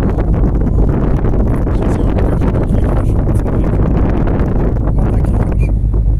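Wind buffeting a smartphone microphone on the open deck of a moving river cruise ship: a steady, loud, low buffeting noise with constant flutter.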